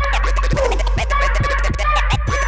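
Turntable scratching: quick back-and-forth scratches of a record sample over music with a steady low bass drone.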